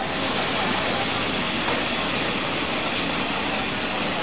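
Steady din of a commercial kitchen: gas wok burners and extractor hoods running, with food sizzling in a wok.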